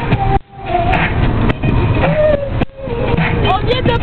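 Women singing loudly inside a moving car, over the car's low road rumble. The sound drops out briefly twice.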